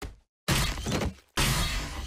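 A cartoon punch sound effect, an armoured gauntlet striking a face, played back slowed to 30% speed. It comes as two long, noisy, deep impacts, the first about half a second in and the second just before a second and a half.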